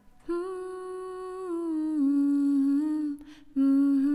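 One voice humming long held notes, unaccompanied. The first note steps down in pitch about two seconds in, breaks off briefly, then a louder held note comes back near the end.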